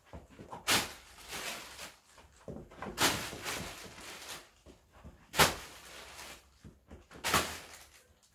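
A plastic carrier bag crackling in a few short, sharp bursts, four of them standing out, as it is tossed up and snatched out of the air, with softer rustling in between.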